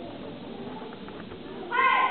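A child's karate kiai near the end: a sudden, loud, high-pitched shout held briefly, over a low murmur of the gym hall.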